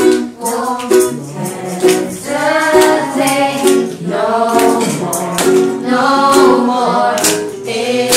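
A group singing a song together, accompanied by strummed ukuleles and an acoustic guitar.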